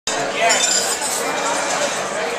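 Busy restaurant dining room: a steady hubbub of many diners' voices with cutlery and dishes clinking.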